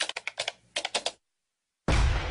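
Typing-like clicks: two quick runs of about four sharp key clicks each, stopping abruptly. A steady hiss comes in near the end.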